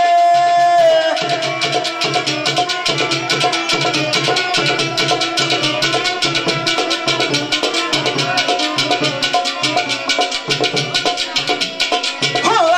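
Live Pothwari folk music: fast, steady drumming under a melody line of held notes. A long held note at the start breaks off about a second in.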